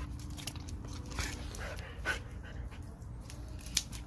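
German shepherd panting as it noses at water balloons, with scattered small clicks and one sharper click near the end.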